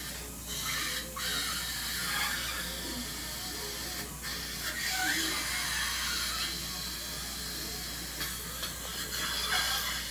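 Steady hiss from dental equipment working at the patient's mouth during a tooth extraction, with faint voices murmuring underneath.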